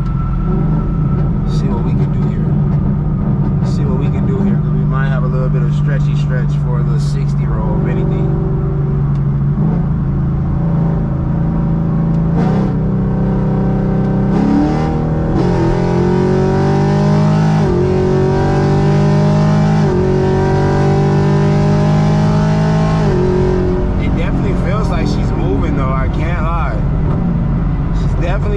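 Camaro SS's 6.2-litre V8 heard from inside the cabin, cruising steadily at highway speed. About halfway through it goes into a hard full-throttle pull, the engine pitch rising through three gears with quick upshifts between them, then eases off a few seconds before the end.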